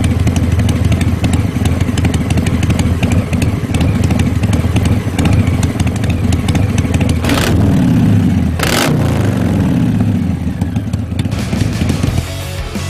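Harley-Davidson Milwaukee-Eight 114 V-twin, tuned with an S&S 002 cam, running through Dr. Jekyll & Mr. Hyde electronically controlled exhaust mufflers: a loud, deep, steady idle, with the revs rising and falling briefly twice about seven and a half and nine seconds in.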